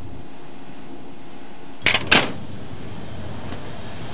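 A steady low hum, with two short, sharp knocks about two seconds in, a third of a second apart.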